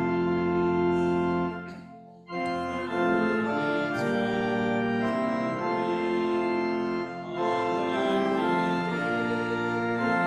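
Organ playing a hymn accompaniment in sustained chords. It breaks off briefly about two seconds in, at the end of a verse, then plays on into the next verse.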